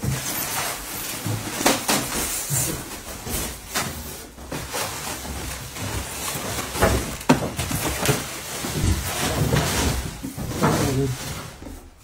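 Furniture being handled: irregular knocks, bumps and rustling as the drawers and cabinet doors of a new white wooden dresser are moved and worked on.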